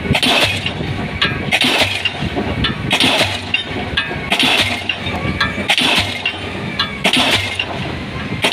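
Pile hammer striking a concrete spun pile, one heavy ringing blow about every 1.4 seconds, over the steady running of the crawler crane's engine.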